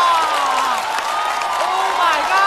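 Studio audience laughing and applauding after a punchline, with excited voices calling out over the clapping.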